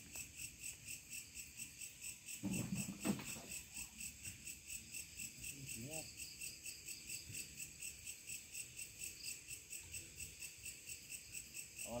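Crickets chirping steadily in a fast, even pulse, with a brief louder low sound about three seconds in.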